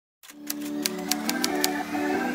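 Soft intro music fading in after a brief silence, with a typewriter sound effect laid over it: about six sharp key clicks at uneven spacing.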